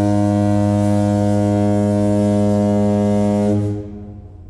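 A ship's horn sounding one long, steady, deep blast that stops about three and a half seconds in and dies away.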